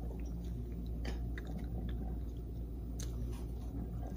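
A person chewing a mouthful of soft steamed bao bun with pork, with scattered small wet clicks of the mouth.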